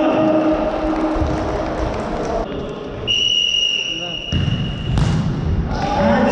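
A futsal ball being kicked and bouncing on a wooden sports-hall floor, with children's and spectators' voices echoing in the hall. A steady high whistle sounds for just over a second, about three seconds in, and a sharp knock of a kick or ball strike comes about five seconds in.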